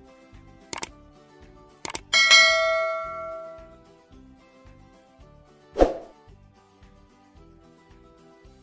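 Subscribe-button sound effect: two quick clicks, then a bright bell ding that rings and fades over about two seconds, over background music with a steady beat. A single short thump follows a few seconds later.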